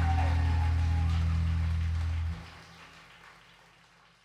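A live band's final sustained low chord rings out under a noisy wash, then cuts off abruptly a little over two seconds in. A faint tail fades away after it.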